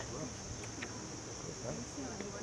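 A steady, high-pitched insect chorus keeps up without a break, with faint voices murmuring underneath.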